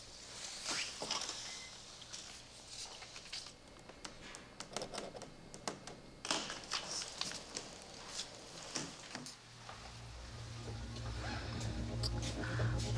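Quiet scattered clicks and rustles, with a ballpoint pen scratching on a paper label partway through. A low music drone fades in near the end.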